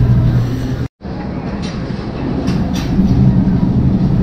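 Steady low rumble and hum of a supermarket's background: a level electrical hum beside refrigerated display cases and chest freezers, with a few faint clicks. The sound drops out completely for an instant about a second in.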